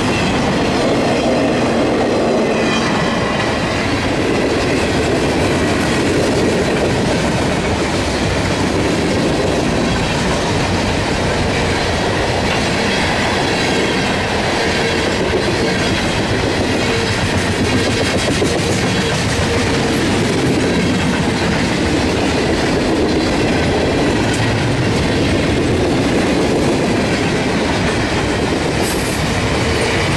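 Freight cars of a mixed manifest train (boxcars, covered hoppers, tank cars) rolling past at speed: a loud, steady rumble of steel wheels on the rails with rapid clicking as the wheels run over the rail joints.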